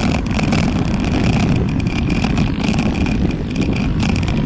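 Loud, steady rumble of wind and road noise on the microphone of a handlebar-mounted camera while a road bike is ridden at speed.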